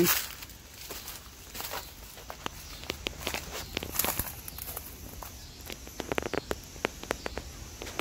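Footsteps crunching through dry leaf litter and twigs on a wooded floor: irregular crackles and snaps, with a quick cluster of them about six seconds in.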